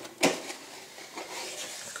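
A thick cardboard kit box being handled and opened: one sharp knock about a quarter second in, then a soft rustling and sliding of cardboard as the lid comes open.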